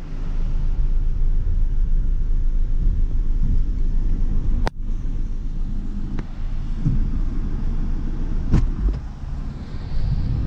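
Steady low rumble around the team car, with two sharp knocks, one about halfway through and one near the end, as a road bike is lifted and clamped onto the car's roof rack.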